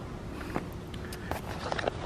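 Low outdoor background rumble with a handful of faint, irregular clicks and taps in the second half.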